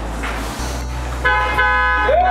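A loud, sustained horn-like honk starts just over a second in, over a steady low drone.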